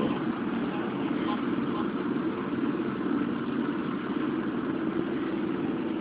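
Steady low hum with hiss, holding an even level throughout with no sharp sounds.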